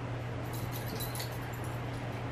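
A small terrier-type dog getting up onto a bed, with a light metallic jingle from its harness for about a second, over a steady low hum.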